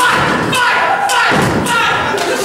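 A few heavy thuds on a wrestling ring, near the start, about half a second in and around a second in, over the shouting voices of spectators.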